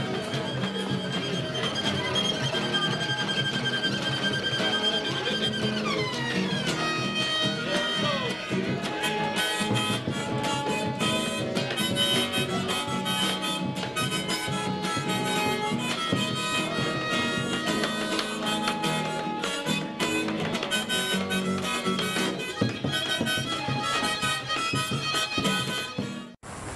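Instrumental music led by harmonica: long held notes that slide downward about six seconds in, then a run of shorter, quicker notes.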